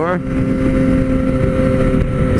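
Motorcycle engine running at steady cruising revs at highway speed, a constant hum over rushing wind noise on the rider's microphone.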